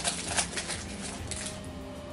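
Foil Pokémon booster pack wrapper crinkling as the cards are slid out of it, with a few sharp crackles in the first half second, then quieter rustling of the cards being handled.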